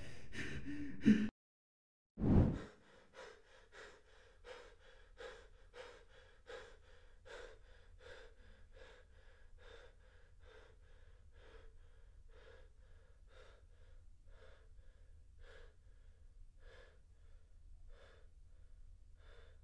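A man breathing hard in short, even gasps, about two a second, that slowly soften as he recovers from exertion. Before the breathing, a louder sound cuts off abruptly, and after a brief silence there is a single loud hit.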